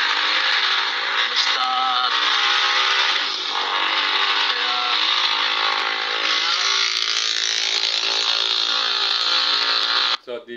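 Loud, steady car-cabin noise: a road rush with an even low engine hum beneath it.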